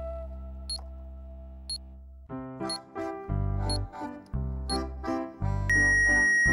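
Countdown-timer tick sound effect about once a second over background music: a held low chord at first, then from about two seconds in a pulsing keyboard beat. Near the end a loud high tone sounds as the countdown reaches zero.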